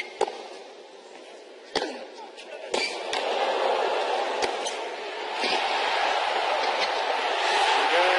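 Tennis ball struck by rackets in a baseline rally on a hard court: sharp pops about a second or more apart. Stadium crowd noise rises from about three seconds in and swells toward cheering near the end as the point is won.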